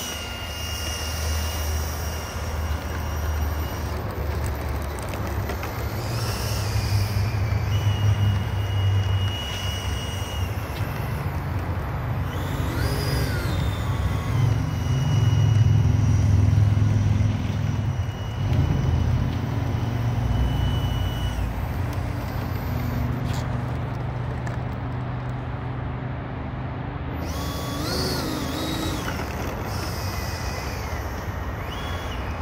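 Electric ducted fan of a model jet running at low throttle as it taxis, a thin high whine over a heavy low rumble. Twice, about halfway through and near the end, the whine briefly rises and falls in pitch as the throttle is blipped.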